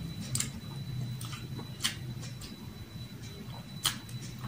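Close-up eating sounds: sharp lip smacks and mouth clicks while chewing, three loud ones among softer ones, over a steady low hum.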